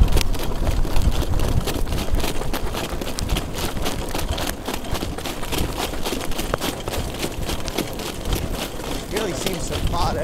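Rapid hoofbeats of a trotting harness horse pulling a jog cart, with wind rumbling on the microphone, heaviest in the first second. A man's voice starts near the end.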